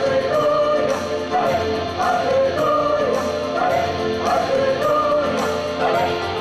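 Mixed choir of men and women singing a gospel number, amplified over a PA, with a regular beat.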